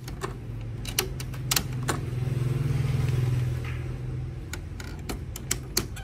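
Sharp plastic clicks and snaps, about eight of them, as the print head is seated in the carriage of a Canon G-series ink-tank printer and its locking cover is handled. Under them runs a low hum that swells for a couple of seconds in the middle.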